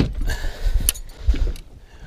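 Boat-side netting of a musky: a sharp knock right at the start, then a few dull low thumps and a light click as the landing net is worked over the gunwale.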